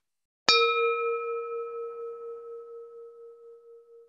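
A single bell-like chime from the BlueSky Timer countdown app, struck once about half a second in and ringing down slowly over about three seconds. It signals that the countdown has reached zero, marking the end of the speaker's allotted time.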